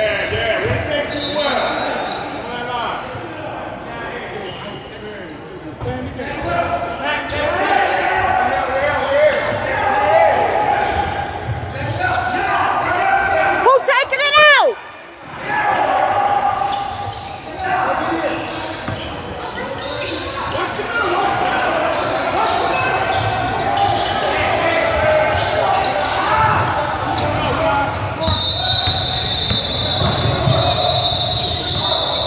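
Indoor basketball game in a large gymnasium: the ball bouncing on the hardwood court and players and spectators talking and calling out, with an echo from the hall. A referee's whistle sounds shortly after the start and again near the end, and a short run of rising squeals comes about halfway through.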